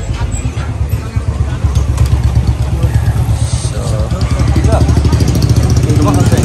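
A vehicle engine running close by with a steady low pulsing note that grows louder over the seconds, amid street noise and brief nearby voices.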